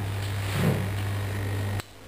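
Steady low electrical hum from the demo's small AC motor running, cutting off suddenly near the end.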